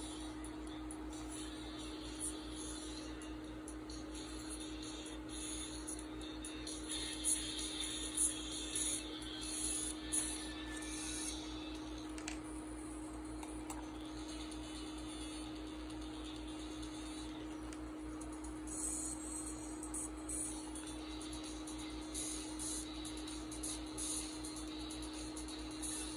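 Faint, tinny pop music played through a DIY bone-conduction driver, a piezoelectric alarm buzzer disc wired to a Bluetooth earbud, sounding through a clear plastic cup, over a steady low electrical hum.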